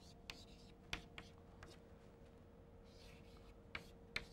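Chalk writing on a chalkboard: short scratching strokes and several sharp taps of the chalk on the board, with a faint steady hum underneath.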